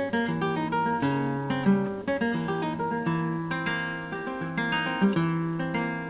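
Nylon-string classical guitar played solo: a flowing passage of plucked melody notes over held bass notes, with a couple of stronger accented notes, one before the middle and one near the end.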